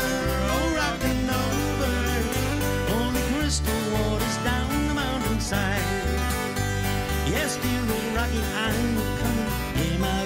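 Live country music: strummed acoustic guitar over a moving bass line, with a bending melody line on top, played steadily between sung verses.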